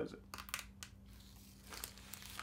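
Fingers picking and peeling at something stuck to a plastic Blu-ray case that will not come off: faint crinkles and small clicks, a cluster about half a second in and a few more near the end.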